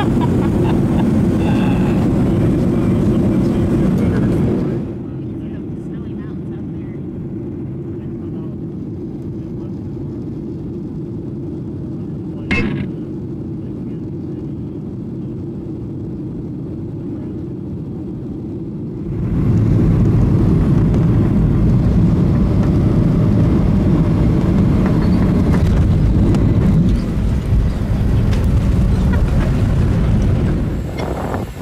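Steady low rumble of a jet airliner's cabin noise in flight, engines and airflow. It drops in level about five seconds in and rises again a little before the last third, with a single sharp click near the middle.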